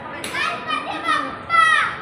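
Children's high-pitched voices calling out, with one loud call falling in pitch about a second and a half in.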